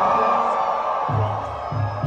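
Live band music getting under way: a sustained chord, joined about halfway through by repeated low bass notes, with crowd noise underneath.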